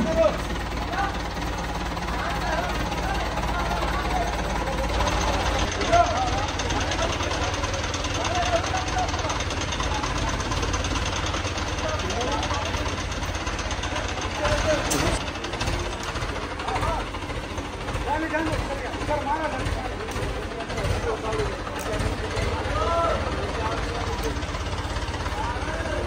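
Diesel engine of an ACE 14XW mobile crane running steadily under a hubbub of many voices. There is a sharp knock about six seconds in.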